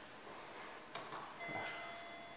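A sharp click about a second in, then a steady electronic beep of several held tones begins near the end: an elevator's arrival signal as the hall lantern lights its down arrow.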